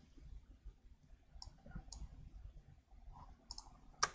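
A few faint, sharp clicks of a computer mouse, spaced apart over near-quiet room tone.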